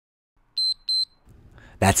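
Two short, high electronic beeps about a third of a second apart from a workout interval timer, marking the end of a timed interval.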